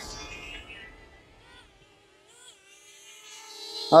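DJI Flip camera drone's motors and propellers spinning up and lifting off with a 150-gram payload cup slung beneath it; the steady hum builds over the last second or so.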